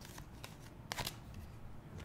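Tarot cards being handled: a card drawn off the deck and laid down on a cloth-covered table, heard as faint card slides and light taps with one sharper click about a second in.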